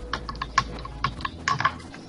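Computer keyboard keys being pressed: several short, light clicks at uneven intervals.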